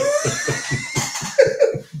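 Two men laughing: a run of quick breathy pulses with a thin rising high tone over the first second, and a louder voiced laugh near the end.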